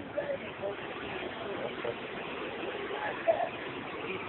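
People talking and laughing over a steady background hiss.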